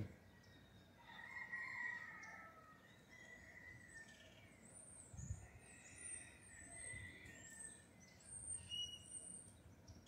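Faint outdoor birdsong: several birds chirping, lower chirps in the first few seconds and thin high-pitched chirps later on.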